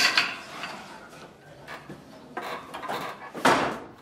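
Wooden upright pedal loom being worked by hand: a knock near the start, then soft sliding and rubbing of wood and yarn as the beater and shuttle are handled, swelling briefly near the end.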